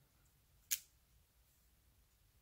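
A single short click from the clear acrylic stamp block being handled as the inked stamp is pressed and lifted off the card, under a second in; otherwise quiet.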